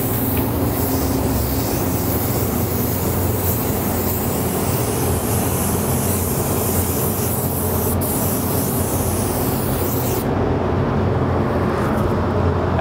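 Compressed-air paint spray gun hissing steadily as it lays a coat of white metal-flake base coat onto a panel, cutting off about ten seconds in when the trigger is released. A steady low hum runs underneath.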